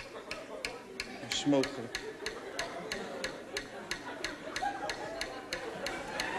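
Quiz answer timer ticking steadily, about four sharp ticks a second, as the time for the question runs out.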